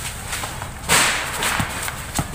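Basketball being handled in a game on a concrete court: one sharp slap about a second in, followed by a few lighter knocks.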